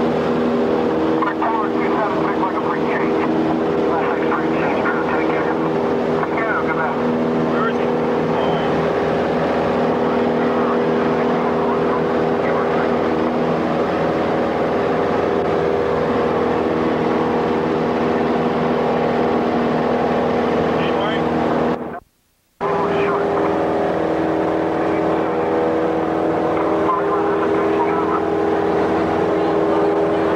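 Light aircraft's piston engine and propeller droning steadily in flight, heard from inside the cabin. The drone cuts out for about half a second a little over two thirds of the way through.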